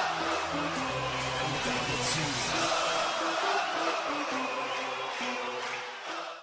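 Background music under a report's opening shots, with held bass notes; the deepest bass drops out about two and a half seconds in.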